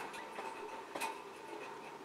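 Faint handling sounds with a light click about a second in, as a liquid lipstick tube is uncapped and its applicator wand drawn out.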